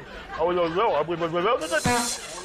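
A man's voice making drawn-out vocal sounds with rising and falling pitch but no clear words, ending in a short, sharp hiss.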